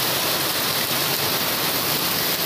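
Heavy rain falling steadily onto standing floodwater on a street, a continuous even hiss.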